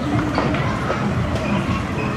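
Outdoor crowd ambience: a steady low rumble with faint distant voices.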